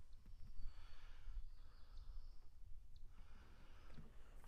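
Quiet outdoor ambience with a low wind rumble on the microphone and a few faint high-pitched sounds.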